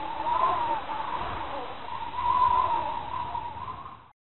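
Intro sound effect: a wavering, whistle-like tone over a low rumbling bed, fading out at the end.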